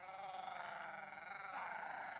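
A man's drawn-out, wavering vocal cry: the voice of the actor playing Gollum, heard faintly from the TV play's soundtrack.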